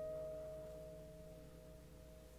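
Soundtrack music: two plucked guitar notes ringing on and slowly fading away, with no new notes played.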